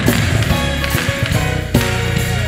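Live gospel music from a choir and band: sustained chords over a strong bass, with a beat and hand-clapping.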